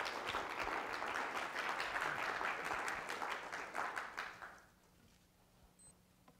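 Lecture-hall audience applauding, the clapping dying away about four and a half seconds in and leaving the room quiet.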